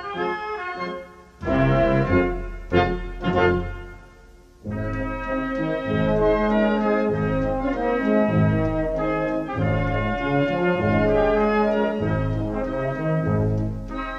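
Military wind band playing a slow funeral march, with brass to the fore. A few short, separated chords with brief pauses give way, about four and a half seconds in, to full sustained chords.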